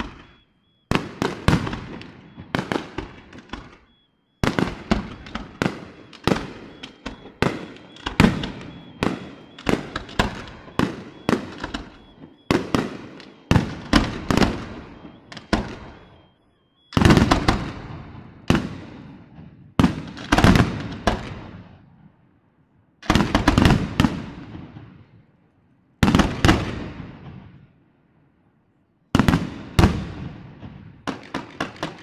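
Aerial fireworks display: rapid volleys of shell bursts, many sharp bangs in quick succession, broken by short pauses of a second or two, the longest near the end.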